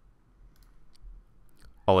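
A few faint computer mouse clicks as a menu command is chosen, over quiet room tone.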